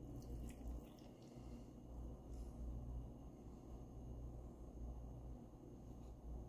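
Faint trickle of hot milk being poured from a stainless steel saucepan into a mug, over a low steady hum.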